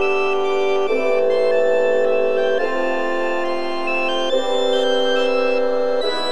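Sampled church organ playing slow, sustained chords, moving to a new chord about every second and a half to two seconds.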